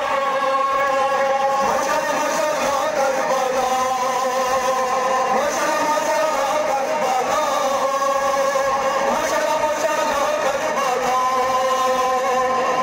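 Amplified male voice chanting a nawah, a Shia mourning elegy, over loudspeakers in long held notes that shift in pitch now and then.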